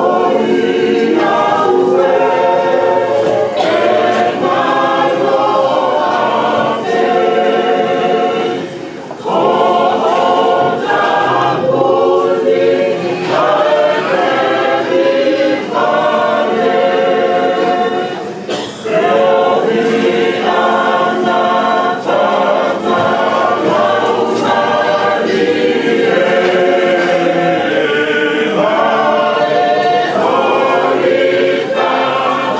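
Church choir singing a Tongan polotu hymn a cappella, many voices in sustained harmony with brief breaks between phrases.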